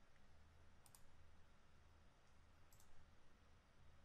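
Near silence with two faint computer mouse clicks, each a quick press-and-release pair, about a second in and again near three seconds: a right-click on the connection and a click on Connect.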